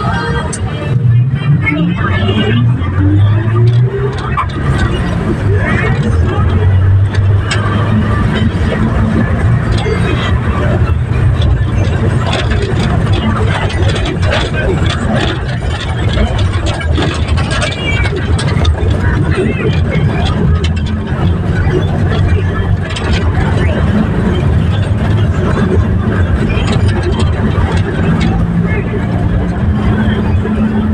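Engine of a moving road vehicle running under the wind and road noise of travel, its pitch rising as it speeds up in the first few seconds, then holding a steady drone.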